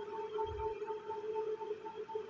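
A faint steady hum: one low tone with a fainter tone an octave above it, wavering slightly in level.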